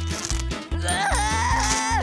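Background music with a steady beat; about a second in, a man's high, wavering whimpering cry starts over it and carries on.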